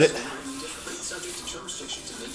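A radio playing faintly in the background, music and broadcast sound, just after the end of a man's spoken word.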